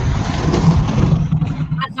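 Loud low rumble with a hiss above it, picked up by an open microphone on a video call. It fades out near the end.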